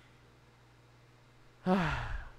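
A man's breathy, voiced sigh into a close microphone near the end, falling in pitch. Before it there is only a faint steady hum.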